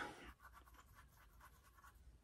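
Near silence with faint scratching of a makeup brush being worked.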